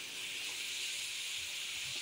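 Potato chips deep-frying in hot oil in a pan: a steady sizzling hiss.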